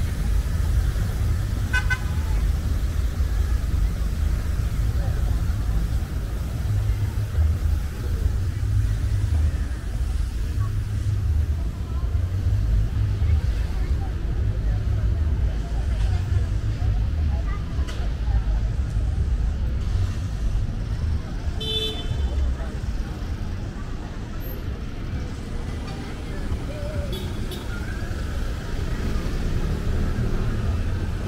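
Night street traffic with a steady low rumble of passing cars and motorbikes, and two short horn toots, one about two seconds in and one a little past twenty seconds. Voices of people nearby come and go.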